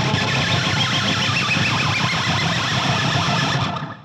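Pick scrape on an electric guitar: the edge of the pick is rubbed along the G and B strings on the bridge pickup, through a very wet echo with multiple slow repeats. It starts abruptly, holds steady, then dies away in echo near the end.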